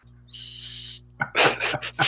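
Men laughing: a short breathy hiss, then chuckling in quick, rhythmic bursts starting about a second in.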